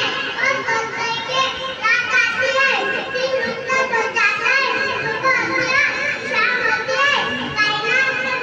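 A boy's speech delivered through a microphone and loudspeaker, running on without pause.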